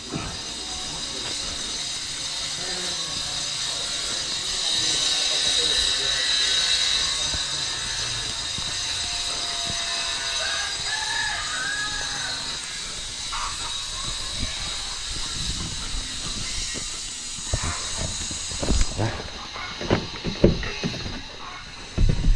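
Steady high-pitched outdoor hiss, loudest a few seconds in. Near the end come several sharp clicks and knocks as a Ford pickup's door handle is pulled and the door opened.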